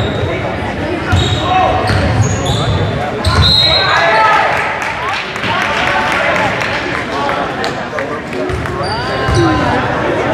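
Basketball bouncing on a hardwood gym floor with sneakers squeaking and players shouting, all echoing in the gymnasium. The bouncing comes in the first few seconds and again near the end.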